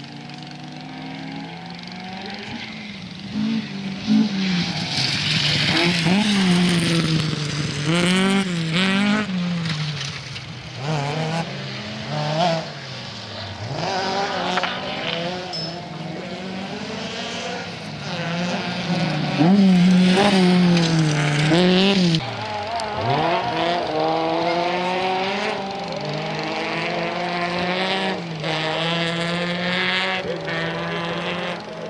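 Audi Quattro rally car's turbocharged five-cylinder engine revving hard, its pitch rising and falling again and again through gear changes and lifts, with a sharp crack about four seconds in. Near the end the revs drop steeply, then climb slowly and steadily.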